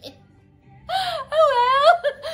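A woman's high-pitched, drawn-out squeals of laughter, two long cries with sliding pitch starting about a second in.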